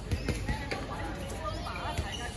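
Dodgeballs thudding on a hard outdoor court during play: a quick run of sharp thuds in the first second and another near the end, with players shouting and calling.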